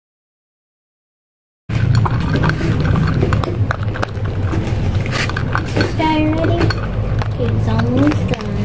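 A small dog crunching dry kibble from a stainless steel bowl: many sharp irregular clicks of teeth and pellets against the metal over a steady low hum. The sound cuts in suddenly after a couple of seconds of dead silence, and a person's voice comes in briefly past the middle and again near the end.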